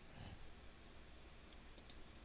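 Near silence with a faint computer mouse click, a quick double tick, near the end.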